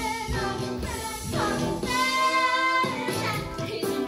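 Young musical-theatre cast singing a show number with music behind it. A sung note is held for nearly a second about two seconds in.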